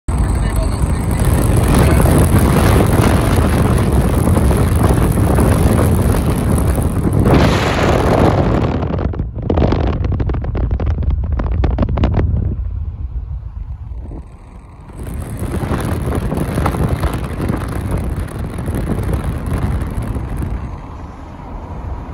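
Road and wind noise of a car driving at speed, heard from inside the cabin: a loud, steady rush with a heavy low rumble. It thins and drops for a couple of seconds a little past halfway, then returns.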